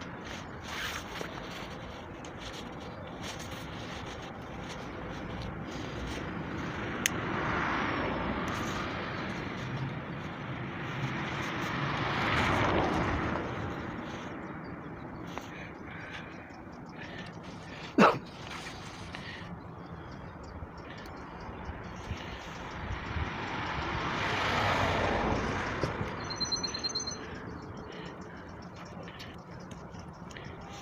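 Building-site din during a concrete pour: a steady mix of machinery and traffic noise that swells and fades three times. A single sharp knock about two-thirds of the way through is the loudest sound, and a brief high chirp comes near the end.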